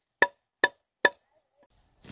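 A plastic sap spile being tapped into a drilled hole in a tree trunk with the end of a hand tool: three sharp, ringing knocks about 0.4 s apart, stopping after about a second as the spile seats snugly.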